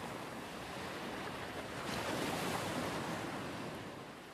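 A steady rushing noise, like surf or wind, that swells slightly around the middle and fades out near the end.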